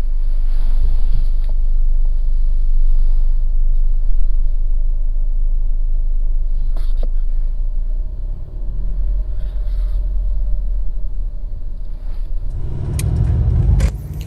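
Low rumble inside the cabin of a 2022 Mercedes GLE350 4Matic as it drives off at low speed, its turbocharged 2.0-litre four-cylinder running. There are a couple of faint clicks about seven seconds in, and the rumble grows louder near the end as the SUV drives on the open road.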